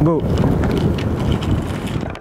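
Wind buffeting the microphone: a loud, steady low rumble that follows the spoken word "go" at the very start.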